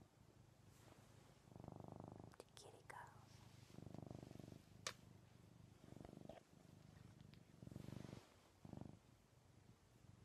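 Ragdoll cat purring close to the microphone while snuggled against a person's chest. The purr comes in swells that rise and fade every one to two seconds as the cat breathes, with a few faint clicks from handling in between.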